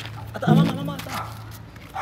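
A short voiced cry with a wavering, bending pitch about half a second in, over a low steady hum.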